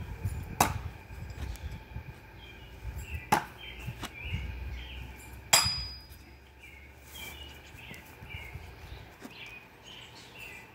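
Cold Steel Sure Strike heavy steel throwing stars hitting a wooden log-round target: three sharp impacts about half a second, three seconds and five and a half seconds in, the last and loudest with a brief metallic ring. Birds chirp in the background.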